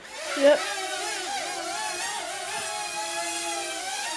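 Small quadcopter-style micro drone's electric motors and propellers whining as it lifts off and flies, several motor tones wavering up and down in pitch with the throttle.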